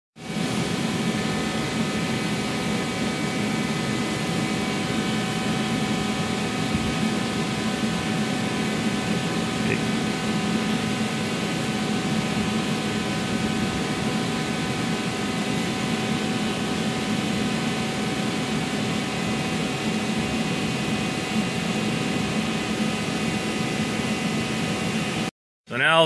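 Steady machine hum with hiss and several constant tones, unchanging throughout, cutting off abruptly near the end.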